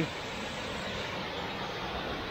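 Steady rushing of a waterfall and river below.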